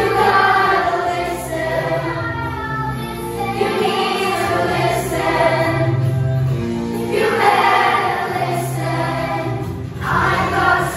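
A children's chorus singing together in unison from lyric sheets, with steady low sustained notes underneath.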